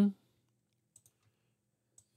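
The tail of a spoken word, then near silence broken by two faint computer mouse clicks about a second apart.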